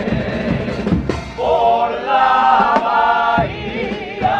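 Male carnival comparsa chorus singing in unison with instrumental accompaniment; from about a second and a half in, the voices hold long, sustained notes together.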